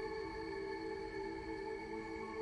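Soft ambient film score of long, steady held notes, several pitches sounding together with no beat.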